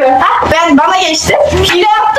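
Girls' voices shouting and squealing excitedly, high and pitch-bending, with no clear words.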